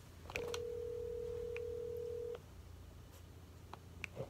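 Telephone ringback tone heard through a phone's speaker while an outgoing call rings: one steady ring about two seconds long, starting after a few light clicks. This is the sound of the call ringing, not yet answered.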